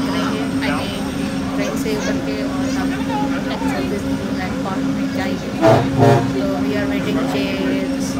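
Inside a moving shuttle bus: a steady engine hum with passengers talking in the background, and two short, louder sounds close together about six seconds in.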